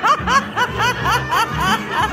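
Someone laughing in a quick run of high-pitched bursts, about five a second, over background music.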